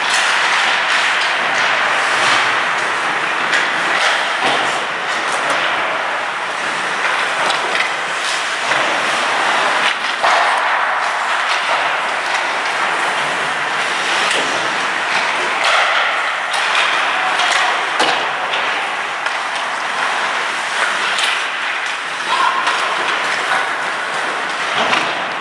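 Ice hockey play: skate blades scraping and carving on the ice, with sharp clacks of sticks and puck scattered throughout.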